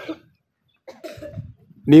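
A brief cough in a pause between a man's speech, which starts again near the end.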